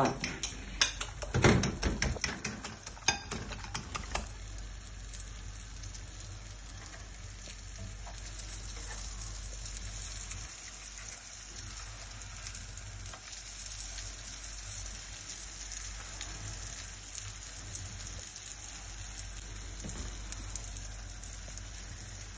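Slices of stale bread frying in hot oil in a frying pan, a steady sizzle. In the first few seconds there is a quick run of clicks from a fork against a glass bowl.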